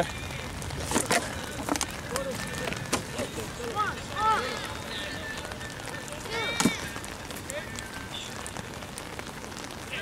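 Faint distant shouts from players across the pitch over a steady outdoor hiss, with a few sharp clicks in the first three seconds.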